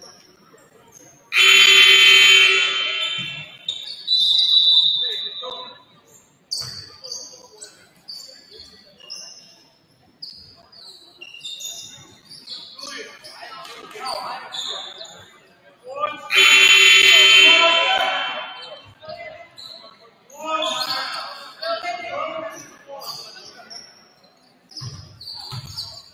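Gymnasium scoreboard horn sounding two steady blasts of about two seconds each, one a second or so in and another about sixteen seconds in, marking the end of a timeout. Chatter in the hall between the blasts.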